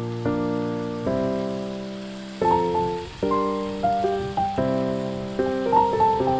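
Background piano music: slow held chords, then from about halfway a higher melody of single notes struck a little faster.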